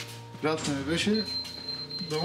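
A man's voice talking over soft background music, with a thin, steady high tone coming in about a second in.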